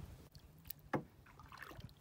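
Faint knocks and small water sounds from a small boat sitting on the water, the clearest a short knock about a second in.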